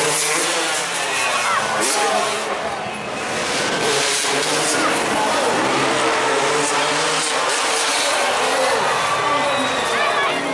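Dirt bike engines revving during freestyle motocross jumps, mixed with crowd noise and voices.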